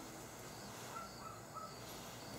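Faint outdoor background with a few short, soft bird chirps about a second in.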